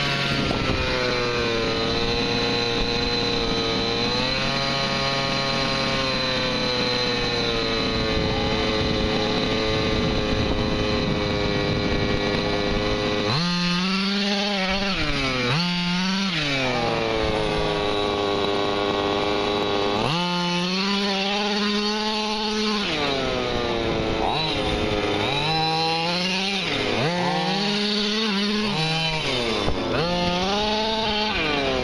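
HPI Baja 5T RC truck's two-stroke petrol engine running at a steady high speed for about the first thirteen seconds, then rising and falling in pitch several times as the throttle is opened and closed.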